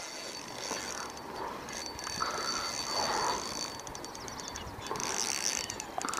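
Fishing reel clicking and ratcheting steadily while a hooked carp is fought toward shore.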